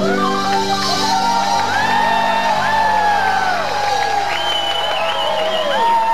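A live rock band holds a sustained chord at the close of a song, while the audience whoops and shouts over it.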